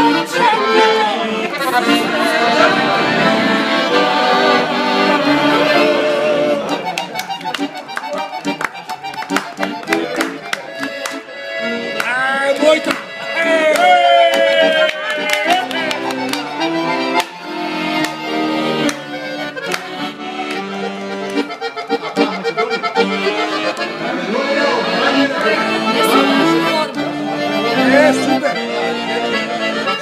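Piano accordion playing a lively traditional folk tune, with a woman's voice singing over it in the first few seconds. Sharp hand claps join in through the middle.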